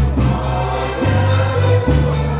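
Live Polish folk dance band playing a dance tune, with a steady beat and bass notes changing every half second or so.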